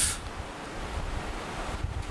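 A steady, even hiss of background noise with no voice, filling a two-second gap between a man's spoken phrases; the speech ends just as it begins.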